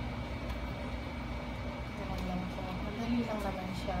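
Steady low background hum with a thin steady whine. Over it come a few faint plastic clicks as the old ear pad is pried off a gaming headset's ear cup with a small tool.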